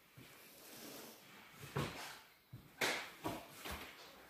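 A few soft knocks and rustles, the loudest near three seconds in, over a faint background hiss.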